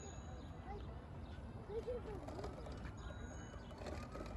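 Outdoor ambience of a busy city park: a steady low rumble with faint distant voices rising and falling in the background.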